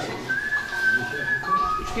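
A thin, high whistling tone held steady for about a second, then stepping down to a lower steady tone near the end.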